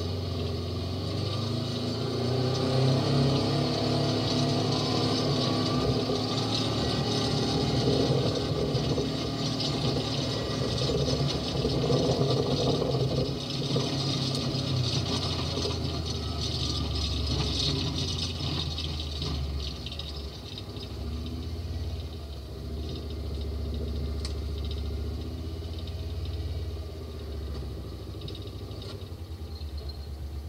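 Utility vehicle's engine running as it drives across rough ground. It runs higher for the first half, then drops to a lower, slightly quieter running from about twenty seconds in.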